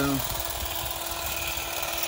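Stihl HSA 25 battery shrub shear with its hedge-trimmer blade attachment running with a steady hum, its reciprocating blades trimming yew shoots.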